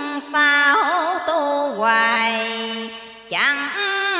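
A woman chanting Hòa Hảo scripture verse in a slow, drawn-out Vietnamese recitation melody. Her long held notes bend and slide, with short breaks for breath just after the start and a little past three seconds in.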